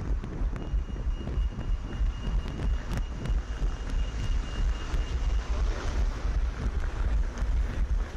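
Wind buffeting a head-mounted GoPro microphone on a running orienteer, with the rhythmic pulse of running footsteps about three times a second. A steady high tone sounds from about half a second in until about five and a half seconds in.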